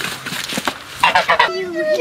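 A grey domestic goose attacking, its wings beating in rough scuffling strokes, then honking about a second in. Near the end a woman's crying voice begins.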